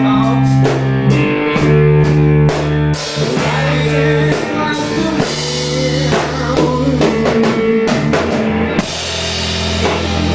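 Live rock band playing: Fender Stratocaster electric guitar, electric bass and drum kit together, with a steady beat.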